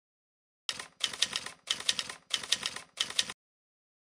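Typewriter-style typing sound effect: rapid key clacks in about five short runs, starting a little under a second in and stopping abruptly a little after three seconds.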